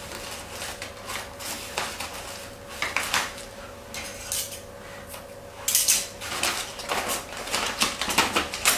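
Wrapping paper rustling and crinkling as a paper-wrapped bouquet is handled, in irregular crackles with a louder burst about six seconds in.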